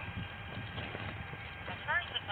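Footsteps of someone walking on a hard walkway, picked up by a chest-worn body camera, with low muffled thuds. A voice rises briefly near the end.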